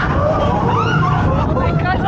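Coaster riders laughing and chattering in high, excited voices over the low, steady rumble of the train rolling along the track.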